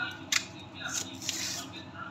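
A chef's knife cutting through crisp romaine lettuce leaves on a plastic cutting board. A sharp double knock of the blade about a third of a second in is followed by a crunchy, rustling cut over the next second.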